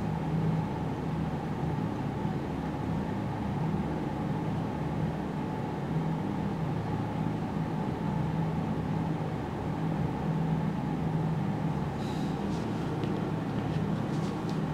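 Steady low background hum, unchanging throughout, with a few faint clicks near the end.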